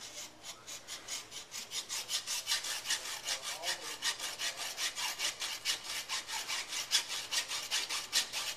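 A hand tool rasping at the end of a water-fed window-cleaning pole in quick, even scraping strokes, about five a second, growing louder about two seconds in.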